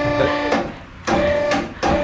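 Electric motor of a two-post car lift running with a steady hum as it raises a stripped car body shell. It cuts out for a moment about two-thirds of a second in and again just before the end, with a click each time it stops and starts.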